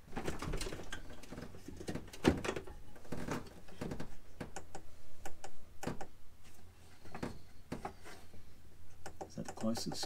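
Irregular light clicks and knocks, several a second, from hands working on the race car's dashboard gauges and wiring.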